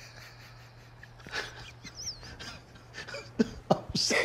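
A man laughing almost silently: short breathy bursts and gasps, starting about a second in and coming closer together near the end.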